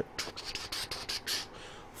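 A person making a quick run of short, breathy hissing mouth sounds with no voice behind them, several in the first second and a half, then a quieter stretch.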